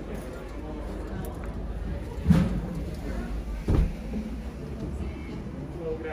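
Indistinct chatter of other people over a steady low rumble in a large glass-walled room, broken by two dull thumps about two and three and a half seconds in.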